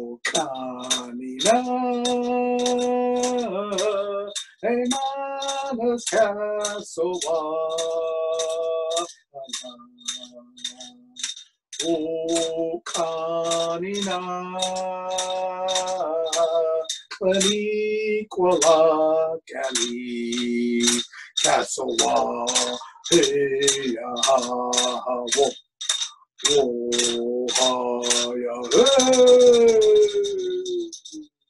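A man singing a canoe-journey healing song in long held, chant-like notes, over a steady beat of about two strikes a second.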